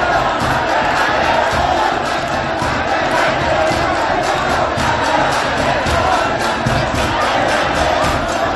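A large crowd shouting and cheering all at once, a dense unbroken mass of voices, with music underneath.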